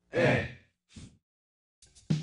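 A voice sounding out the letter E in a phonics drill: one long drawn-out syllable, then a short fainter one about a second in. Music starts just at the end.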